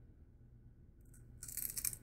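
A crunchy bite into an old, stale Ferrero Rocher chocolate: its wafer shell and hazelnut crackle for under a second near the end.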